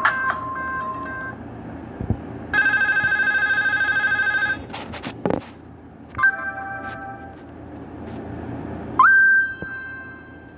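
Nokia 5228 ringtones played one after another through the small loudspeaker of a Nokia 130, each cut off after a second or two. A melody ends about a second in, then a fast-pulsing electronic tone, a few clicks, a short jingle, and near the end a tone that sweeps up and holds.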